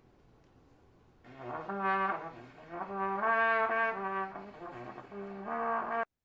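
A trombone playing a short phrase of held low notes, starting about a second in and stepping between a few pitches; the sound cuts off suddenly at the very end.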